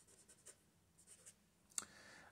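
Felt-tip marker writing on paper: faint, short scratching strokes as a word is written out.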